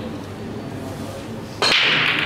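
Eight-ball break shot on a pool table: a sharp crack about one and a half seconds in as the cue ball smashes into the racked balls, followed by the clatter of the balls scattering.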